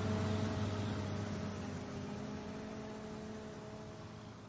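A steady low drone with a few held tones, fading out slowly: the background bed of the dramatization's sound design dying away.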